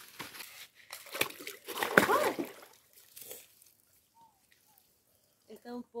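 Water sloshing and splashing in a shallow stream, with crunching of dry leaves and a few knocks, as someone wades in; a short vocal sound about two seconds in is the loudest moment, and the second half is mostly quiet.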